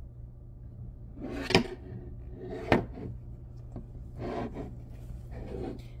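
A wooden push-pop toy being handled on a table: a few sharp knocks and clatters, the loudest a little under three seconds in.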